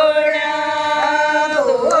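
Women singing a Haryanvi devotional bhajan (folk song) unaccompanied, drawing out long held notes, with the melody dipping and climbing back near the end.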